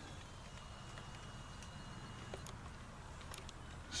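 Faint outdoor background: a steady low rumble with a few faint ticks, and a thin high whine lasting about two seconds from the camcorder's zoom motor.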